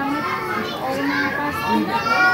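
Children's voices chattering and calling out, with people talking among them.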